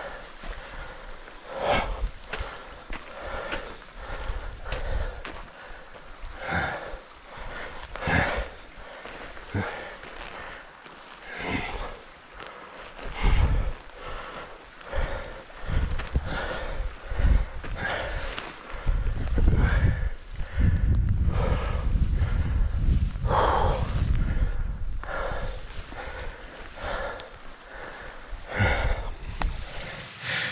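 A man breathing hard, heavy breaths about every second or so, out of breath from climbing a steep slope of loose shale. Footsteps scrape on the loose stones, and a low rumble joins in a little past the middle.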